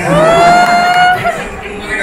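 A person's voice drawing out one long call that rises and then holds for about a second, followed by short speech-like sounds.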